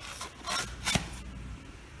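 Foam pool noodle rubbing and scraping against PVC pipe as it is pushed onto the pipe by hand, in two short bursts about half a second and one second in.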